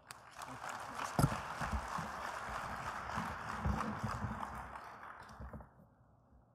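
Audience applauding, with a few low thumps among the clapping. The applause dies away about five seconds in.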